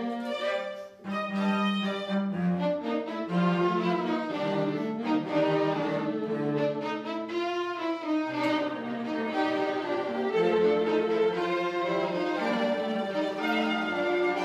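A string quartet playing, with violin and cello prominent, the sound broken by a short pause about a second in.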